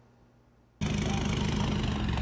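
Toyota Hilux pickup's engine idling steadily, cutting in abruptly about a second in after a moment of near silence.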